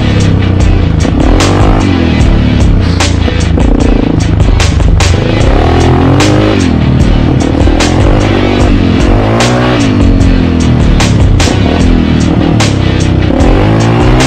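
Music with a steady beat laid over a Yamaha TT350 dirt bike's single-cylinder four-stroke engine. The engine's pitch rises and falls repeatedly as the bike is ridden and the throttle is worked.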